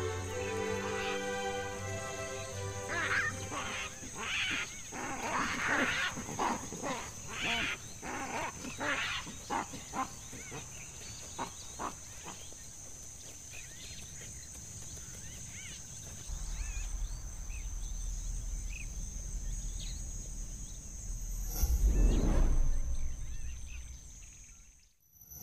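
Baboons calling: a run of loud, harsh barks and screams over several seconds, heard as a music bed fades out. Later comes a low steady rumble, then a swelling whoosh near the end.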